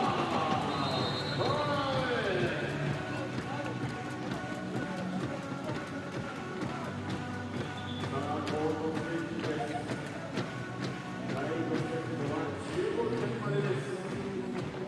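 Volleyball arena sound: music playing over the crowd, with players yelling at the start and again near the end, and sharp knocks throughout.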